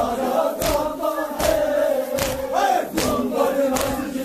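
A crowd of mourners chanting a lament together, broken by loud unison chest-beats (sina zani) that keep the rhythm, about one every three-quarters of a second.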